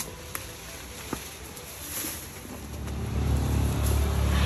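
A few light clicks in the first second or so, then a low motor-vehicle engine rumble that swells up steadily over the last second and a half.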